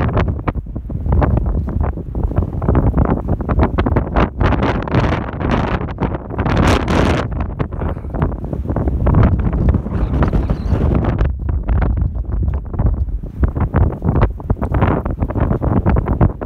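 Strong wind buffeting the camera's microphone in gusts, a loud rumbling noise that rises and falls throughout.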